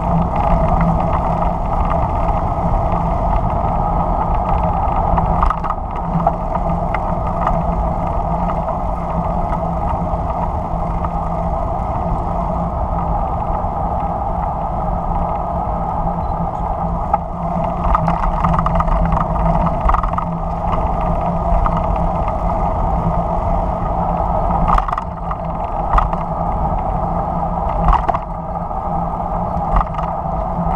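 Steady drone of a car driving along a paved road, engine and tyre noise running evenly, with a couple of short knocks in the last few seconds.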